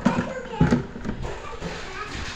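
A few light knocks and clatter of toy tea-set dishes being handled, the loudest just over half a second in.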